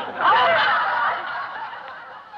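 Audience laughing at a comedian's punchline. The laughter rises sharply about a fifth of a second in and fades away over the next second and a half.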